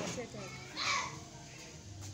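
Background voices of children and adults, with short wordless vocal sounds and a louder brief burst about a second in.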